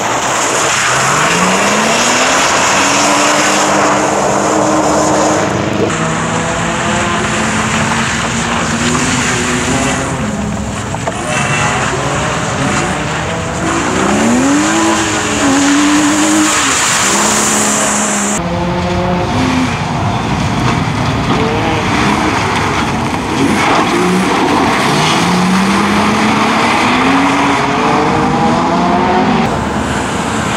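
BMW E46 engine revved hard, its pitch climbing again and again and dropping back as the car accelerates, shifts and brakes between tight turns, with tyre noise on wet tarmac.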